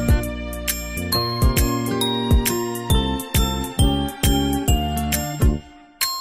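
Background music of bright, bell-like struck notes, a few a second, dying away in the last half second.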